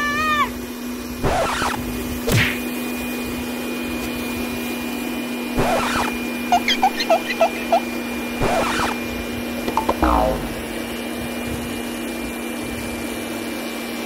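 Electric balloon blower running with a steady hum, inflating a latex balloon through a tube. A few brief swishes and a short run of quick chirps sound over it midway.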